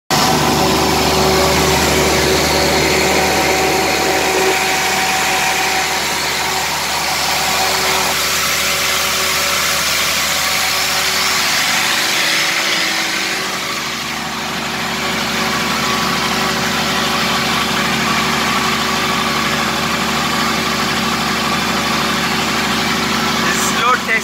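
Cummins diesel engine of a 250 kVA generator set running at constant speed while carrying electrical load, about 79 A per phase on the panel, a steady loud drone.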